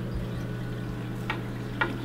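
Steady hiss of a running aquarium over a continuous low hum, with two faint clicks in the second half.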